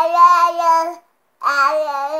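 A toddler's sing-song babbling: one long held vowel at a steady pitch, then a second one starting about a second and a half in.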